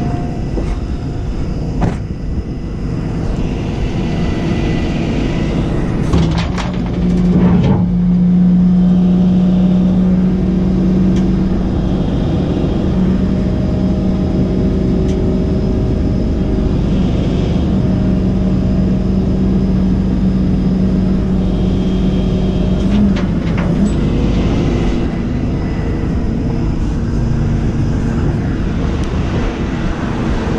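Jerr-Dan rollback tow truck's winch pulling a car up the tilted steel bed, over the steady running of the Freightliner's diesel engine. A strong, steady hum comes in with a few clicks about six seconds in and stops about twenty-three seconds in.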